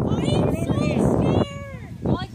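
Excited high-pitched voices squealing and calling out over a noisy crowd, with a lower drawn-out call near the end.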